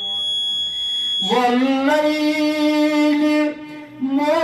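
A man's voice chanting melodically and unaccompanied into a microphone. About a second in he glides up into a long held note, and the phrase breaks off near the end before the next one begins.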